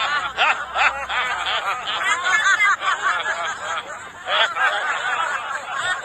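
A group of women laughing together in a laughter-yoga exercise, several voices overlapping in continuous bursts of laughter.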